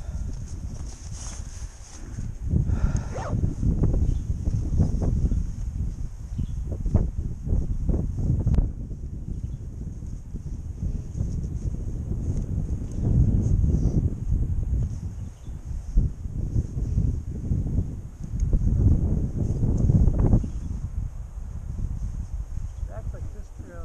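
Wind buffeting the helmet-mounted camera microphone in irregular gusts that swell and fade, with a faint steady high hiss behind it.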